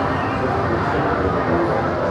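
Amusement arcade din: game-machine music with short electronic notes over a steady hubbub of background voices.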